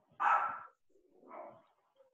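Two short animal calls, the first louder and the second fainter about a second later.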